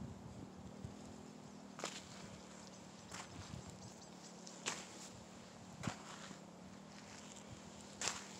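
Footsteps on dry, sandy field soil, with a few sharp crunches about two, five and six seconds in, over a faint steady hum.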